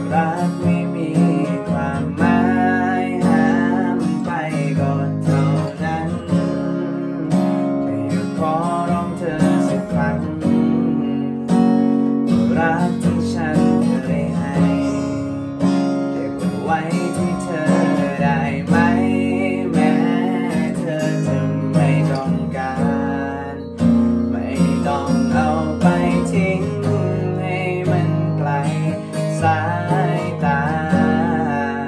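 A man singing a Thai song to his own strummed acoustic guitar, played with a capo, in one continuous stretch of the verse.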